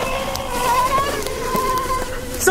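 Steady high buzzing drone of a flying insect, holding two pitches with a slight waver; a light knock about one and a half seconds in.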